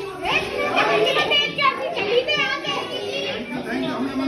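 Indistinct, overlapping voices of children and adults talking and calling out.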